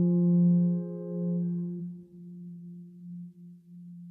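The closing held keyboard note of a soundtrack song, a single low note fading away, its upper overtones dying out first until only a faint tone remains.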